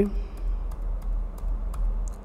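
Computer keyboard keys clicking, a handful of light, irregular presses, over a steady low hum.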